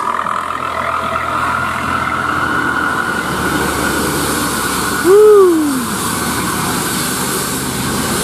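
A diesel coach bus's engine working hard as it climbs past on a hairpin bend, a steady drone with a whine over it. About five seconds in, a loud call glides up and then down in pitch for under a second.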